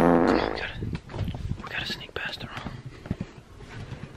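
A person whispering in short breathy bursts. The tail of background music fades out in the first half second.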